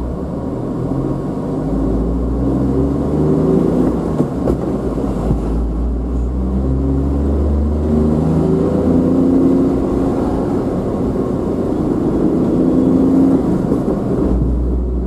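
A car's engine and road noise while driving. The engine pitch climbs several times as the car pulls away and picks up speed, over a steady low rumble.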